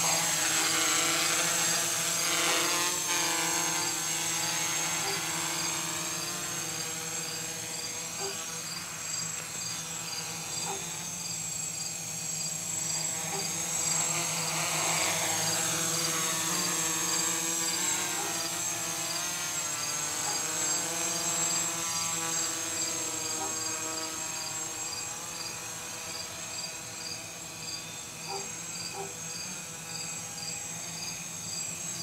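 Gaui 330X quadcopter's electric motors and propellers buzzing as it lifts off and flies, the pitch rising and falling with throttle. Loudest at the start, fading as it moves away.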